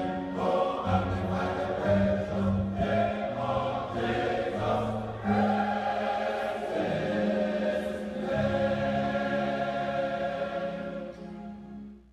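Choir singing, held notes moving from one to the next, fading out near the end.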